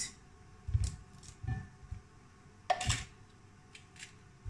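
Quiet handling sounds of fish being pulled apart and deboned by hand over a plate: a few soft knocks and one sharper clatter about three seconds in.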